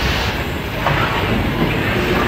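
Factory machinery running with a steady rumbling noise, and a light click about a second in.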